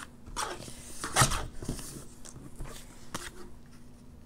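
Paper trimmer cutting a small piece of lined paper, with a sharp cut or snap about a second in, a few lighter clicks, and paper being handled.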